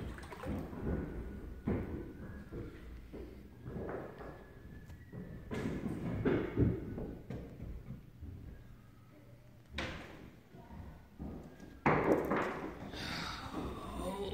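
Floodwater about a foot deep sloshing and splashing as a person wades through a flooded basement. Irregular surges of water noise come with a few knocks and thumps, and there is a louder splash near the end.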